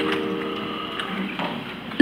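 The held tones of a three-note chime ring on and fade, with a couple of faint clicks beneath. The chime strikes again right at the end.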